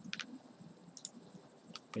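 A few quiet computer mouse clicks, some in quick pairs like double-clicks, over faint room tone.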